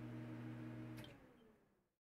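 A faint, steady low hum of a few held tones that stops about a second in, leaving near silence.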